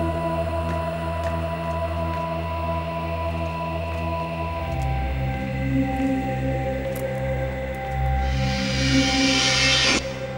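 Background score of low sustained drones and held tones. Near the end a hissing swell builds up and cuts off suddenly.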